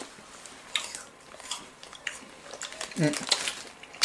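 Faint eating sounds: a few short, sharp crunches and crinkles as apple slices are bitten and a plastic fruit bag is handled, with a brief 'mmh' about three seconds in.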